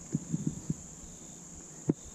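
Steady high-pitched insect chirring, with a few soft low thumps in the first second and one sharp click near the end.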